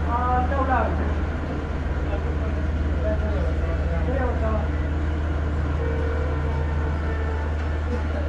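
A steady low mechanical hum, like an engine or motor running, with a few short voiced calls over it, one just after the start and another group around the middle.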